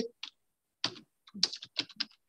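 Typing on a computer keyboard: a quick, irregular run of about eight keystrokes as a word is typed.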